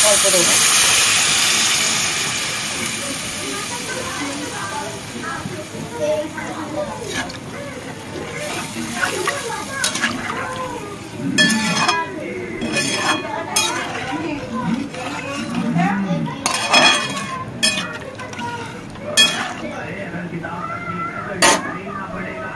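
Water poured into a hot pan of fried potatoes and spiced masala, hissing and sizzling loudly at first and dying down over the first few seconds. Later a metal spatula clinks and scrapes against the pan several times as the thin gravy is stirred.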